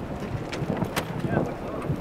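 Wind buffeting the microphone as a low rumble, with a couple of sharp knocks about half a second and a second in.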